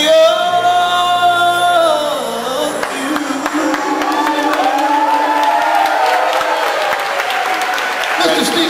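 Male singer's voice amplified through a PA, holding one long note and then sliding through wavering vocal runs as the song closes. Hand clapping from the room joins in about three seconds in.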